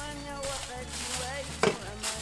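Aluminium foil crinkling as it is pressed and folded down over the edges of a baking dish, with one sharp, louder tap near the end.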